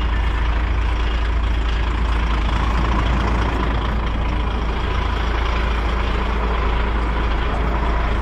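Heavy truck's diesel engine idling steadily, with a thin steady whine over the low engine sound.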